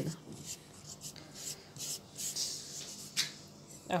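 A hand spreading softened butter across rolled-out dough: quiet, intermittent rubbing and swishing, with one short sharper sound about three seconds in.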